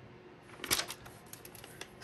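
Quiet pen-and-paper handling in a planner: one sharper click a little under a second in, then a few faint ticks and scratches.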